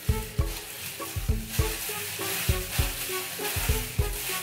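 Clear plastic gloves crinkling and rustling as they work hair dye through the hair. Under it, background music with short piano-like notes and a steady beat.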